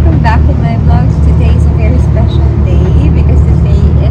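Voices talking over a loud, steady low rumble of outdoor street noise.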